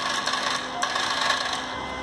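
Wire-feed motor and drive gears of a MIG 150BR V8 welder running with a steady noise while the torch trigger is pulled, the sound shifting slightly under a second in. The drive is slipping and not pulling the wire, a fault traced to drive gears seated out of place.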